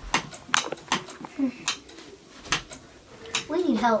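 A handful of short, sharp clicks and knocks at uneven intervals, then a child's voice crying out near the end.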